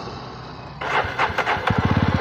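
Jawa motorcycle engine running while riding, with wind noise. It gets louder about a second in, and near the end it settles into a rapid, even putter of about fifteen exhaust beats a second.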